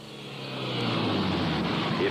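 A car driving: engine hum and road noise fading in over about a second, then holding steady.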